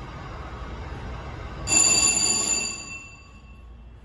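Schindler dry-type hydraulic freight elevator running, its pump motor giving a steady low hum. A single bell chime rings sharply a little under two seconds in and fades over about a second. The running sound then drops away as the car reaches the landing.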